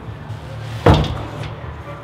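A glass-paned front door pulled shut with a single sharp bang about a second in, the glass rattling briefly after it.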